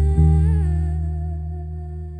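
A woman's voice holding one long sung note, with a slight waver about half a second in, over a deep electric bass note plucked just after the start that rings and slowly fades.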